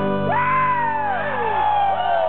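Live band with a brass section holding a sustained chord while the audience whoops and cheers, the loud whoops starting about a third of a second in.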